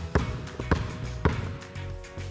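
A basketball dribbled on a hardwood court floor: three bounces about half a second apart, over background music.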